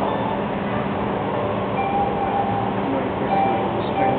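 Steady ambient din of an aquarium viewing area, with a few brief, faint ringing tones around the middle.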